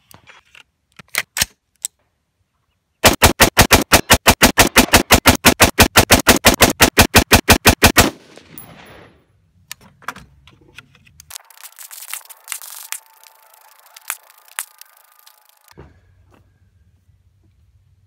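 AR-15 with a Rosco Purebred barrel firing 30 rounds of AAC 77-grain OTM, the shots spliced back to back into an even run of about six a second that lasts about five seconds. A few single clicks come before the shots, and a softer hiss follows later.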